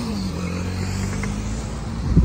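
City road traffic: a motor vehicle running with a steady low hum that drops slightly in pitch at the start, over road and wind noise.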